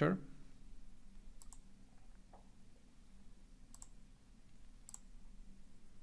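Faint computer mouse clicks, three of them spaced a second or more apart, over a low steady hum.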